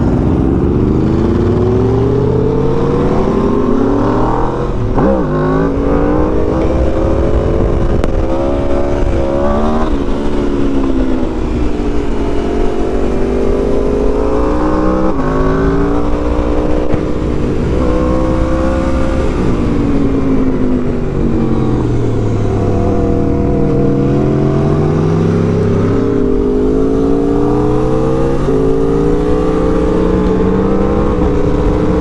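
Aprilia RSV4 Factory's V4 engine, fitted with a Yoshimura exhaust, heard from the rider's seat. Its revs climb and drop again and again through the gears as the bike accelerates and slows along the road.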